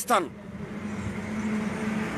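A motor vehicle running nearby, a steady low hum over road noise that grows gradually louder.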